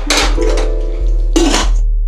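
Two brief metallic clatters from a stainless steel pot and utensil as the pot of mashed cauliflower is handled, over background music with a deep bass line.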